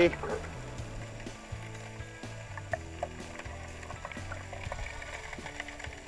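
Background music: sustained low notes that step from one pitch to another every second or so, with a few faint clicks over it.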